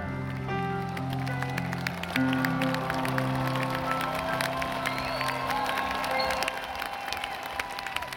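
The final held chords of a live band's slow piano ballad, ringing out and fading over about five seconds. From about a second in, the audience starts applauding, and whistles and cheers join the clapping as it grows.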